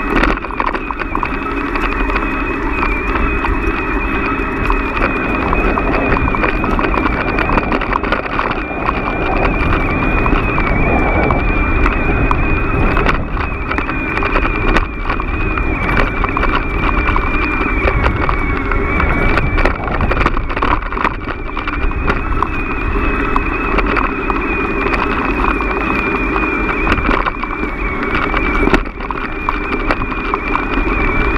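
Bicycle ridden slowly over a rough dirt track, heard from a camera mounted on the bike: a steady rumble with many small rattling knocks from the bumps, and a steady high-pitched whine.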